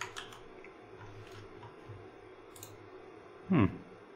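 A few faint clicks at a computer, the sharpest cluster at the very start and single softer ones later, over a low steady hiss.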